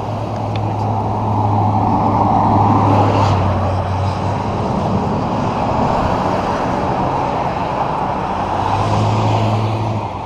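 Motor vehicle noise: a steady low engine hum that fades out about a third of the way in and comes back near the end, over a continuous rushing noise.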